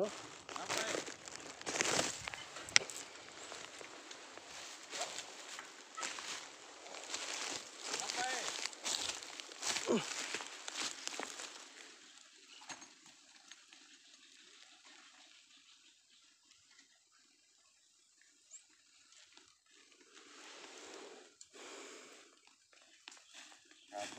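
Dry leaf and bamboo litter crunching and rustling under handling and movement, busy for about the first half and then much quieter.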